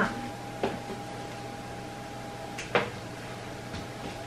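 Light knocks of a wooden picture frame being handled and set against a wall while it is hung, the clearest about three-quarters of the way in, over a faint steady hum.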